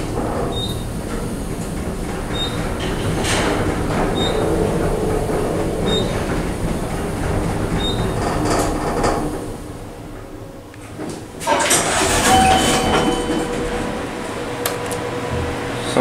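Fujitec traction elevator cab running, with a steady rumble and hum and a short high beep about every two seconds. The sound fades as the cab slows, then gets suddenly louder about eleven and a half seconds in.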